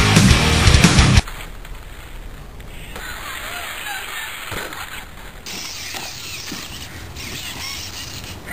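Loud heavy-metal music that cuts off abruptly about a second in. After it comes the quieter raw sound of a Traxxas E-Maxx electric RC monster truck, its motors whining up and down as it drives the bank. A few short knocks follow as it tumbles over.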